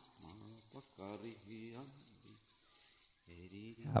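Faint, low, wavering voice-like tones over a steady hiss like running water, quiet in the middle and returning near the end.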